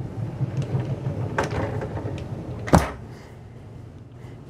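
Panelled pocket door sliding in its track, with a small click about a second and a half in and a sharp knock near three seconds as the door reaches its stop.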